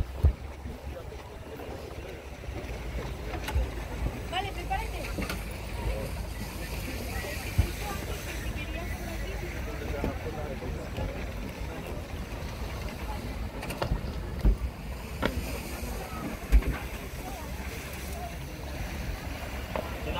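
Wind noise buffeting a phone microphone outdoors, a steady low rumble with a few short low thumps, under faint distant voices.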